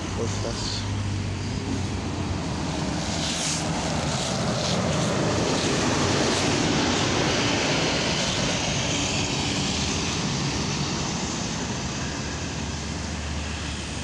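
City bus pulling away from a stop: the engine and road noise build to a peak about six seconds in, then fade as the bus drives off.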